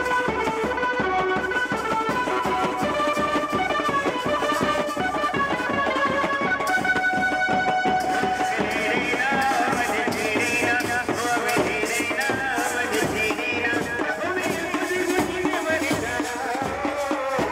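Indian wedding-procession band playing a lively folk tune: a steady beat on bass drum and side drums under a melody line that becomes wavier and higher about halfway through.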